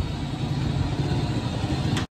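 Steady low rumble of street traffic with engine noise.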